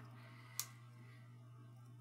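Near silence with a steady low hum, and one faint tap about half a second in as a paper embellishment is handled on the layout.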